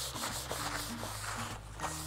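Paper towel rubbing and wiping across the surface of a wet luxury vinyl plank, mopping up spilled water.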